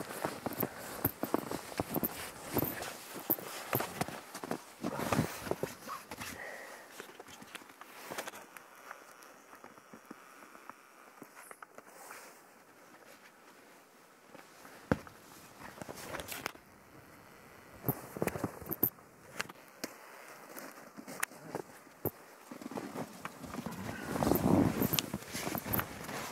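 Footsteps crunching and scuffing in deep snow, in irregular steps with a quieter stretch midway and a louder, busier stretch near the end.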